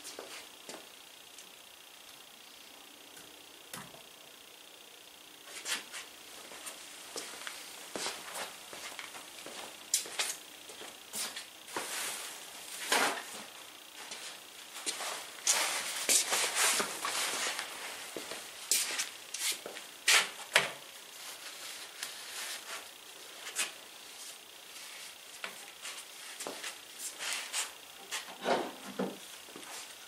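Workshop handling noises: an irregular run of light metallic clinks, knocks and rattles of hand tools being picked up and set down, starting about five seconds in and busiest in the middle.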